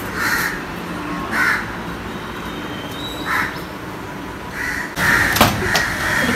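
A crow cawing: four single caws spaced one to two seconds apart. Near the end comes a sharp knock over louder background noise.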